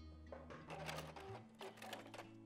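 Domestic sewing machine stitching in short runs with irregular clicking, as it sews the last stretch of the hem on a jersey balloon sleeve. Soft background music plays underneath.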